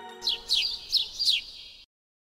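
Bird-tweet sound effect for a cartoon bird: four quick, high, downward-sweeping chirps over the fading last notes of a jingle, cutting off abruptly near the end.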